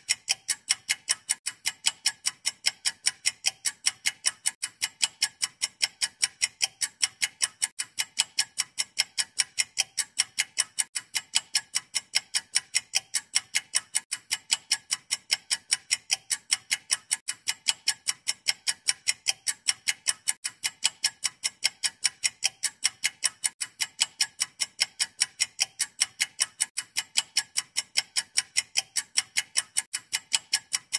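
Clock ticking fast and evenly, about three to four sharp ticks a second, like a countdown timer.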